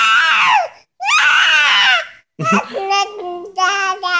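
Baby vocalising in about three long, high-pitched cry-like wails, each sliding down in pitch toward its end.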